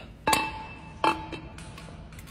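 A glass display dome knocked twice, about three-quarters of a second apart, each knock a sharp clink followed by a short ringing tone.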